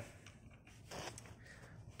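Near silence with low room hum, and one faint, brief rustle about a second in.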